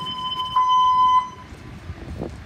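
Fire station alerting tone over the station's speakers, a single steady electronic tone announcing a dispatch. It comes in at once, swells louder about half a second in, and stops about a second and a half in.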